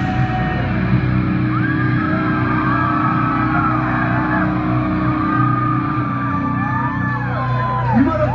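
Live rock band letting a sustained chord ring on after the drums stop, with the audience whooping and cheering over it.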